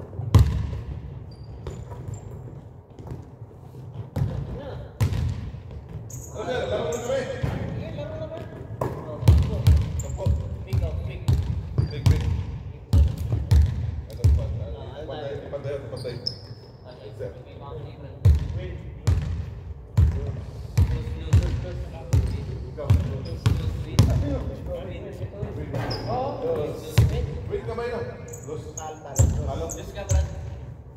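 Basketballs bouncing on a hardwood gym floor, a run of irregular thuds, with indistinct voices talking.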